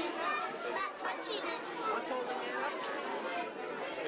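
Many overlapping voices, children's among them, chattering in a busy room; no single voice stands out.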